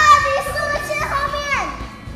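Children's high-pitched voices shouting during play. A long held call that steps in pitch and slides down near the end is the loudest part.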